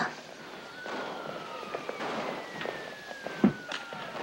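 Tense hush of a saloon scene with scattered small clicks and knocks, one heavy thump about three and a half seconds in, and a faint thin tone that slowly falls in pitch.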